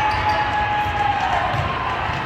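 Din of a busy volleyball tournament hall: balls thumping on the courts and a murmur of voices over a low rumble, with a long high held tone that falls slightly and fades about one and a half seconds in.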